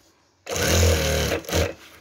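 Sewing machine running in one burst of about a second, starting about half a second in, stitching curtain heading tape onto a sheer curtain.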